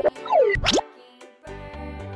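Children's background music with an added cartoon sound effect: a falling whistle-like glide, then a quick rising pop. The music then cuts out for about half a second and starts again.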